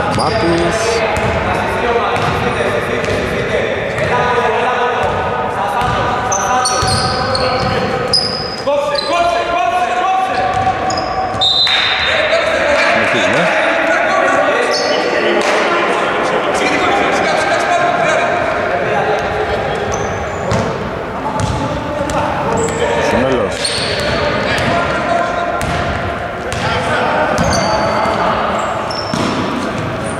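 Basketball game in a large gym: a ball bouncing on the hardwood court among players' voices calling out, all echoing through the hall.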